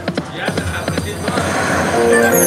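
Dancing Drums slot machine game sounds during its free-spins bonus: a quick run of sharp clicks and drum-like hits over the game's electronic music, swelling into a hiss near the end.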